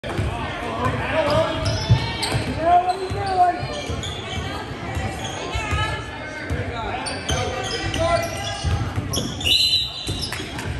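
Basketball bouncing on a hardwood gym floor during play, with voices of spectators and players carrying in the large, echoing hall. A brief high-pitched squeak comes near the end.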